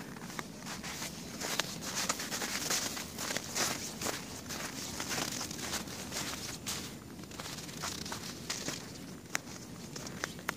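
Footsteps of a person walking steadily through snow.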